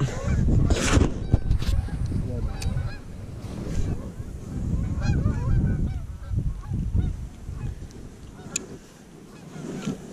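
A flock of geese honking repeatedly in the background, many short overlapping calls, over a steady low rumble.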